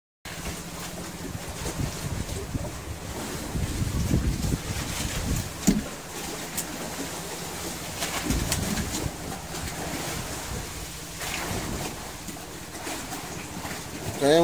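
Wind and sea noise on the open deck of a fishing boat, with a steady low engine hum under it and a few knocks from handling on deck, the sharpest about six seconds in.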